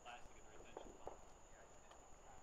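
Near silence: faint distant voices, with two soft clicks about a second in, over a steady faint high whine.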